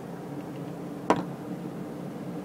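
A single sharp click about a second in, over a steady low hum: the rotary range selector of a CD V-700 Geiger counter being switched up to the ×10 scale because the meter is pegged on the lower range.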